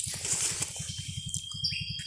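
A rapid, even low flutter of well over ten pulses a second, with a thin, high, steady bird whistle lasting about a second in the second half, a short higher note and a brief falling chirp near the end.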